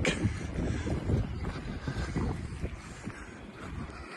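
Wind buffeting the microphone: an uneven low rumble that gradually fades.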